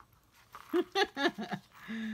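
A woman laughing softly in a few short bursts, starting about half a second in.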